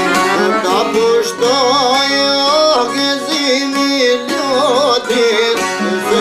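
Albanian folk music played on plucked long-necked lutes, the two-stringed çifteli among them, with quick plucked strokes under a wavering violin melody with vibrato.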